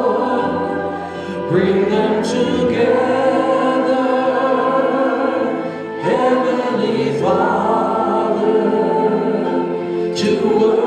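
A small group of voices singing a slow worship song in harmony over keyboard, with long held notes. New phrases start about a second and a half in and again about six seconds in.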